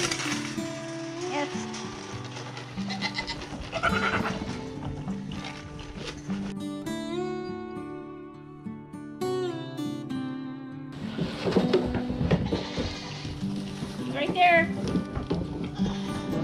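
Goats bleating a few times, about four seconds in and again near the end, over background music that plays throughout; for a few seconds in the middle only the music is heard.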